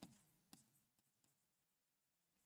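Near silence, broken by two faint taps of a stylus writing on a digital board, about half a second and a second in.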